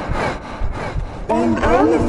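A dense, harsh mix of several effect-distorted soundtracks playing at once: rasping noise with rough pulses, joined a little over halfway through by a loud wavering, warbling voice-like sound.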